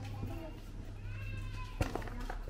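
High-pitched children's voices calling and talking, with a sharp click near the end.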